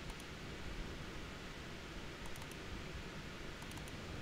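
Quiet steady room hiss with a few faint computer-mouse clicks, at the start, midway and near the end, as dyno graphs are closed and opened in the software.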